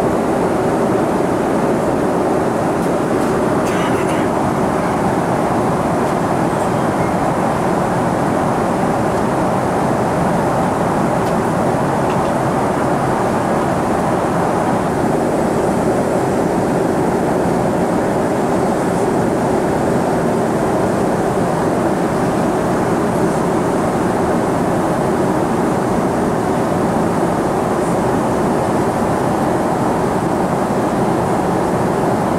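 Steady jet airliner cabin noise in flight: an even, unbroken rush of engine and airflow noise.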